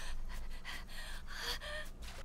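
Faint gasping, panting breaths from a person, with a short faint voiced sound about one and a half seconds in.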